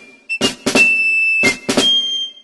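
Background music with a drum beat of sharp hits, some in quick pairs, under steady high held notes.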